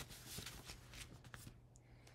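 Faint rustling of paper greeting cards being handled and set aside, with a few soft ticks, dying away after a second and a half.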